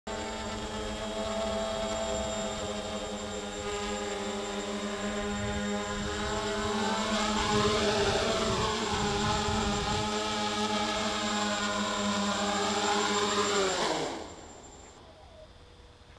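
Electric quadcopter motors and propellers humming as a stack of steady tones that drift up and down in pitch, then winding down together and dying away about fourteen seconds in.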